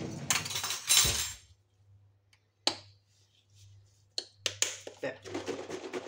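Kitchen handling sounds of a spoon and containers: a loud rustling scrape in the first second and a half, a single sharp click near the middle, then a quick run of light clinks and knocks near the end.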